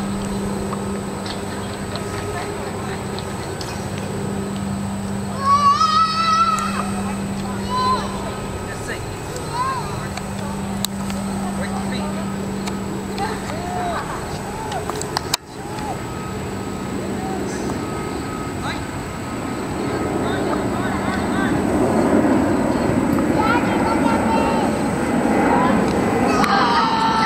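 Jet engine noise of a Boeing 767 airliner climbing overhead, growing louder over the last several seconds. Voices murmur in the background, and a low hum comes and goes.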